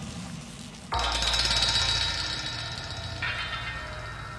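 Dramatic film-score sting: a sudden metallic clang over a low boom about a second in, ringing on and slowly fading.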